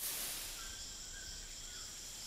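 Rainforest ambience: a steady high-pitched insect drone, with a few faint short notes scattered through it.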